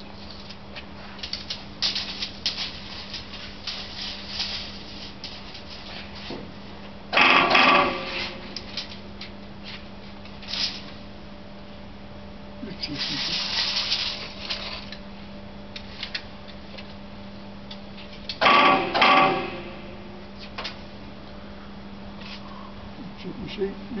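Hydraulic hot press running during a pressing cycle with a steady low hum, light mechanical clicks in the first few seconds and a hiss around the middle. Two loud bursts of about a second each, one about a third of the way in and one near three quarters, stand out above the hum.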